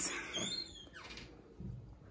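Built-in wardrobe door being moved by hand, with a short high scraping squeak in the first second that then dies away.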